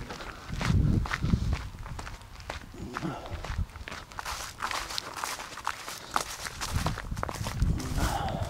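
Footsteps of a person walking over dirt and grass, irregular steps with brushing and rustling.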